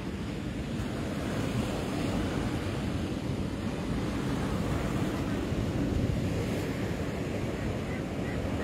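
Rough-sea surf breaking and washing up a sandy beach, a steady rush of waves, with wind rumbling on the microphone.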